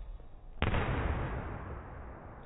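One sharp smack of a boxing glove punch landing on a focus mitt, a little over half a second in, with echo trailing off over about a second.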